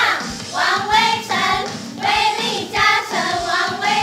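Group of female cheerleaders singing a baseball batter's cheer chant in unison over a backing track with a steady beat about twice a second.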